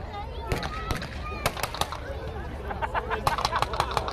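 Scattered sharp cracks of blank gunfire, single reports about half a second apart at first, then a quicker run of smaller pops in the second half.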